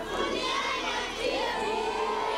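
A crowd of children shouting and cheering, many voices overlapping at a steady level.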